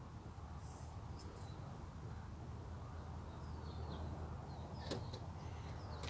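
Quiet outdoor background: a low steady hum with faint bird chirps in the middle, and a single light click about five seconds in.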